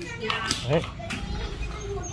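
Voices: a man's brief spoken word, with children chattering and playing.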